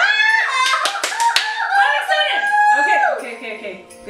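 Excited voices of a woman and a child: drawn-out squeals and exclamations rather than clear words. A quick run of hand claps comes about a second in.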